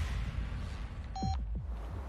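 Sound design under a TV drama promo: a steady low drone, with a short high electronic beep and a deep falling boom a little over a second in.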